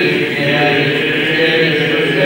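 Unaccompanied male Byzantine chant of the Greek Orthodox funeral service, sung with long held notes in a reverberant church.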